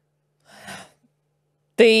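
A short audible breath in at a microphone, then a woman starts speaking again near the end.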